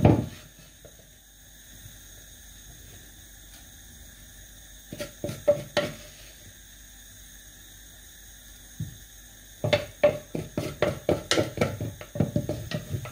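A few knocks and clinks as chopped red chillies and garlic are tipped into a frying pan of oil about five seconds in. Near the end comes a quick run of clicks and pops, about four or five a second.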